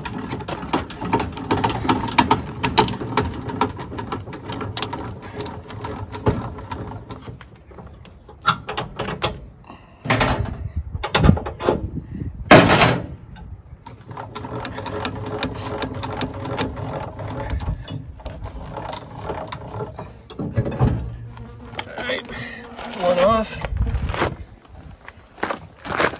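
Manual trailer tongue jack being cranked up, its gears grinding with a faint repeating whine, to lift the hitch and take the load off the weight distribution bars. It pauses twice, and a few sharp metallic clunks fall in the middle.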